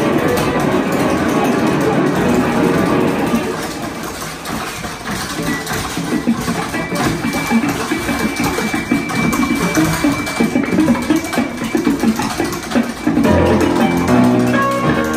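Free-improvised duo of electric guitar and tap dance: guitar notes over a stream of tap-shoe strikes on a wooden platform, busiest and most clattering in the second half, with the guitar coming forward near the end.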